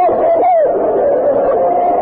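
A man's voice on an old archival sermon recording, drawing out his words into long held tones. The pitch bends at first, then holds steady.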